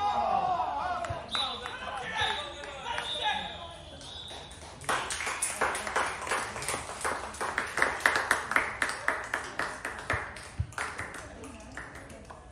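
Players' voices calling across a football pitch at first, then a steady high-pitched tone held for a few seconds. Through the second half comes a rapid run of sharp clicks and taps.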